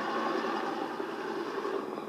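Helicopter rotor and engine noise from a music video's soundtrack, a steady dense whirr that slowly fades toward the end.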